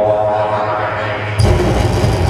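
Live electronic noise music from a tabletop rig: a droning, buzzing tone over a low hum, with a harsh burst of hissing noise cutting in suddenly about one and a half seconds in.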